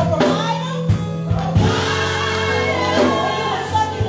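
Gospel praise team singing over keyboard accompaniment: a woman leads on a microphone with backing singers, and the voices hold a long chord from about one and a half seconds in.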